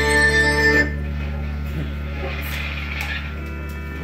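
Amplified guitars and gear sounding through the PA: a steady low drone with a held ringing chord that stops about a second in, then fainter sustained tones.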